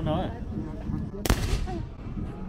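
A single gunshot about a second into the clip, a sharp crack with a short tail after it, from a muzzle-loading gun fired at a shooting range.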